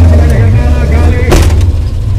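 Rally Suzuki Jimny's engine running at low revs, heard from inside the cabin, with one sharp bang about a second and a half in.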